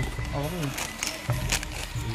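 Voices of people talking in the background, over faint music, with two short clicks a little past the middle.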